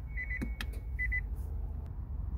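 Electronic cabin chime of a 2017 Nissan Leaf: short high beeps in quick groups of three, with one longer tone between them, while the shift selector is worked and clicks a couple of times.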